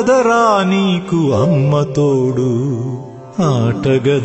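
Indian devotional song: a solo voice holding long, wavering, ornamented notes over light accompaniment. It fades briefly near the three-second mark, then the next phrase comes in on a rising note.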